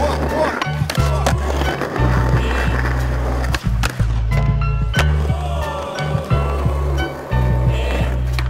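Skateboard wheels rolling on concrete, with several sharp pops and slaps of the board and grinding on a concrete ledge, over a hip-hop beat with heavy bass.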